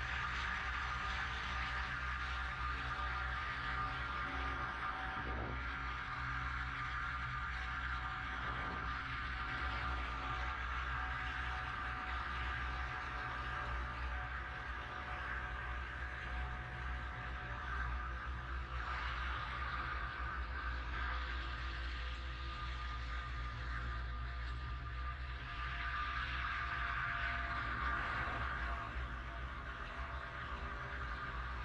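Cable car travelling along its cable: a steady mechanical hum with a few high whining tones over a low rumble, swelling twice in the second half.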